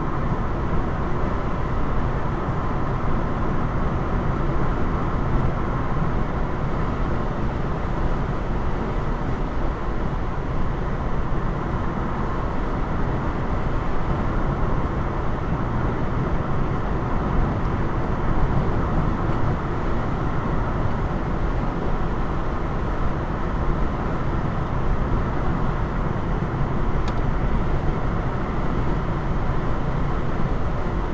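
Steady road noise inside a car cruising at about 65 mph on the highway: tyre and engine noise at an even level throughout.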